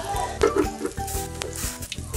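Fuchka (puri) dough rounds deep-frying in hot oil in a wok, sizzling steadily as they puff up.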